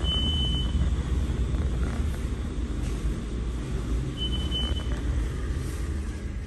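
MEI traction elevator car riding up the shaft: a steady low rumble and hum of the ride, with two short high beeps, one at the start and one about four seconds later.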